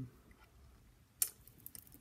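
Glass bead dangles on beaded trim clicking against each other and against fingers as they are handled: one sharp click a little past halfway, then a few light ticks.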